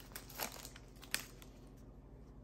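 Foil trading-card pack wrapper crinkling faintly in hands, with a few short crackles, the sharpest a little after one second in.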